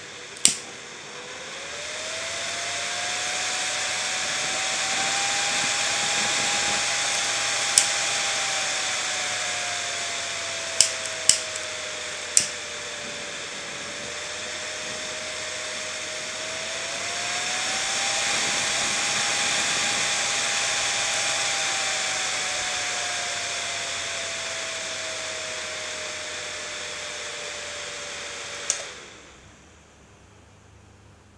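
Temperature-controlled CPU cooler fan from a stock AMD cooler whirring. Its pitch rises as it speeds up under the heat of a butane lighter flame, falls slowly, rises a second time and falls again. Sharp clicks come now and then, and near the end the whir stops suddenly after a click.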